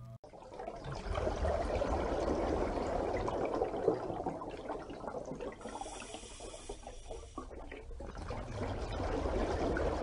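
Rushing, bubbling water, somewhat quieter in the middle and rising again near the end.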